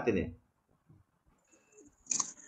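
A voice trailing off in a short laugh with falling pitch in the first half-second, then near silence with a few faint clicks.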